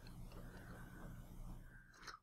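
Near silence: faint room tone with a low steady hum and a few tiny faint ticks, dropping away almost entirely near the end.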